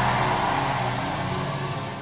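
A large congregation cheering and shouting, dying down, over sustained keyboard chords.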